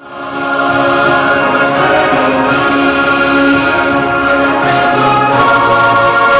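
Choral music with voices holding long, sustained chords, swelling in from silence over the first second.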